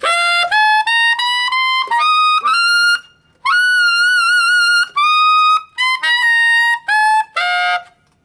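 Tenor saxophone playing the G blues scale in the altissimo register. A run of notes rises about an octave from altissimo G, then after a brief break a long top note is held with vibrato, and a run comes back down to the starting G.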